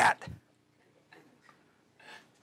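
A man's voice ends a word, then a quiet room with two faint small clicks, about a second in and half a second apart.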